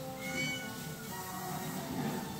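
A domestic cat meowing once, briefly, near the start, over steady background music.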